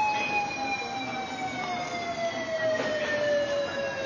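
A siren sounding one long tone that falls slowly and steadily in pitch.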